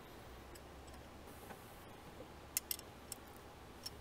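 Faint, sparse metallic clicks of a hand tool and nut as a flange nut is threaded onto the stud holding an oil catch can bracket, a handful of ticks in the second half, over a low steady hum.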